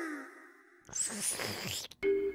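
A musical sound effect's last tones fade out. About a second in comes a short noisy rustling and crackling, about a second long, from a large cooked red shrimp being pulled apart by hand, and it is cut off sharply.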